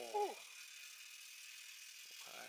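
A young man's short, surprised "oh" right at the start, then a faint steady high hiss of background noise.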